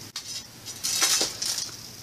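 A small zippered tin holding little hard candies, handled so the candies rattle and clink inside in a couple of short bursts about a second in.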